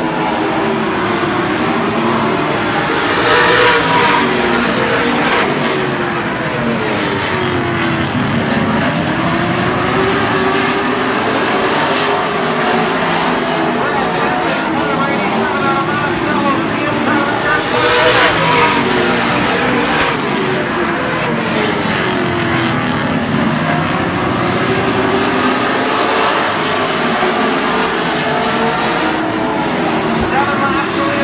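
A field of late model stock cars racing around a short oval, their V8 engines rising and falling in pitch as they go through the turns and down the straights. The pack passes loudest twice, about four seconds in and again about eighteen seconds in.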